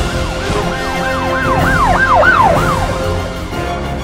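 A siren-like sound effect, its pitch swooping up and down about four times a second for roughly three seconds, laid over the intro music of a reggae track.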